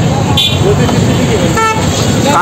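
Crowded street traffic: vehicle engines running in a steady rumble, with a brief high beep about half a second in and a short horn toot near the end.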